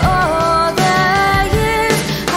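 A song playing: a singing voice holding notes and sliding between them over instrumental accompaniment with a steady beat.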